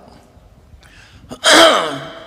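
A man's faint breath during a pause. About a second and a half in, his voice comes in loud with one drawn-out sound that falls in pitch.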